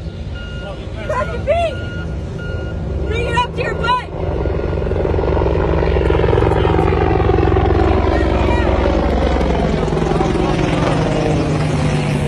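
A vehicle's reversing alarm beeps on and off with a few short shouts over it. About four seconds in, a loud vehicle rumble swells up and holds, with a slow falling whoosh as it passes close.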